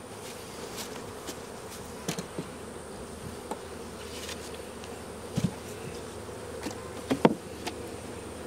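Honeybees buzzing in a steady hum around open breeder hives, with a few light knocks as the wooden hive boxes and lids are handled.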